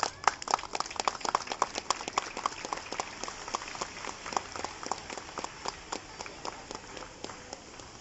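A small group of people clapping by hand, the claps distinct rather than a dense roar, loudest in the first couple of seconds and thinning out toward the end.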